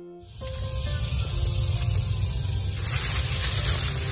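Steady rushing hiss over a low rumble, the cabin noise of a car with its engine running, setting in a moment after the start.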